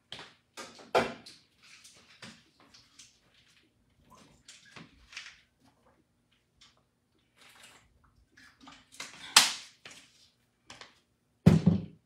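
Scattered knocks, clicks and rustles from a person moving about and handling things in a small room. A loud knock comes about a second in, a sharp click about three-quarters of the way through, and a heavy thud just before the end.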